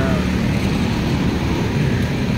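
Heavy road traffic: cars and motorcycles passing close by in a steady rumble of engines and tyres.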